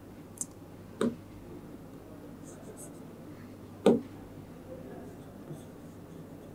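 Stylus writing on an interactive whiteboard's screen: faint scratching and a few sharp taps as the pen meets the glass. The clearest taps come about a second in and, loudest, near four seconds.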